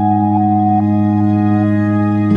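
Ambient background music: a steady held low chord with a slow melody of soft higher notes over it.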